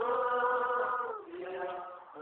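A group of voices singing a hymn together: a long held note for about the first second, then a lower note that fades away near the end.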